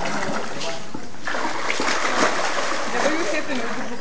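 Water splashing and sloshing as a crowd of crocodiles lunge and thrash in a pool, snapping at meat dangled on a line. The splashing grows louder about a second in.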